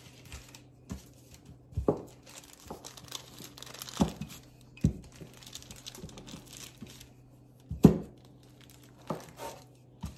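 Wooden rolling pin rolling DAS air-dry clay flat on a paper sheet over a stone countertop: the paper crinkles and rustles under it, with a few sharp knocks as the pin is set down and pressed, the loudest near the end.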